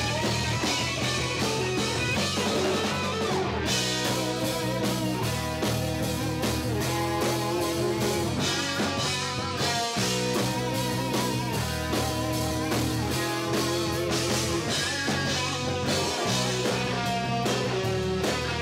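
Two electric guitars playing a rock song together through amplifiers, a riff under melodic lead lines, over a steady beat.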